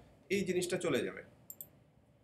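A man speaks briefly, then a computer mouse gives two quick clicks close together about a second and a half in.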